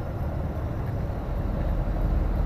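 Steady low rumble of a flatbed lorry's engine and tyres, heard from inside the cab while driving along the road.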